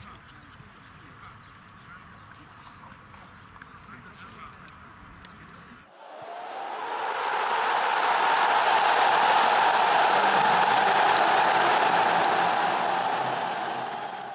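Faint outdoor background with distant voices, then, about six seconds in, a loud, steady rushing noise from the outro's sound effect swells up over about two seconds, holds, and fades away at the end.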